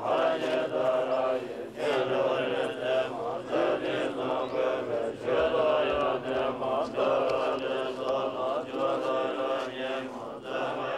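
Several voices chanting Tibetan Buddhist prayers together, in continuous phrases with short breaks every couple of seconds.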